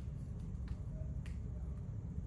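A few faint, sharp clicks of dry-erase markers being handled and capped or uncapped, over a steady low room hum.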